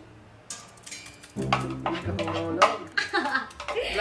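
Clinks of a plastic spoon against a glass bowl and a metal plate while scooping cotton balls, under laughing voices and background music. The voices come in about a second and a half in, with a few sharp clicks among them.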